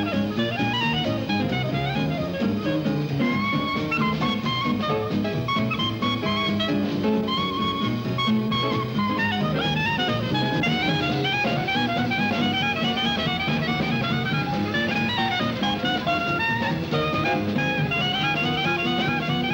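Swing-jazz clarinet solo, fast runs of notes over a band with bass and drums, with quick climbing phrases repeated through the second half.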